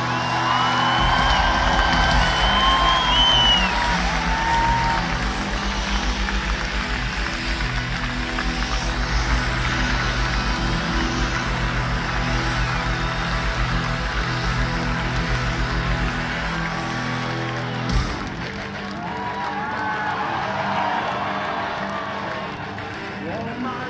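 A rock band playing live at loud volume: electric guitars with bending lead lines over a fast, pounding kick drum and bass, heard from within a large crowd. About eighteen seconds in, the heavy low end cuts off abruptly, leaving crowd cheering and shouting.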